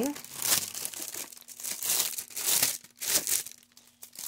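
Plastic packaging crinkling in irregular bursts as it is handled and pulled open.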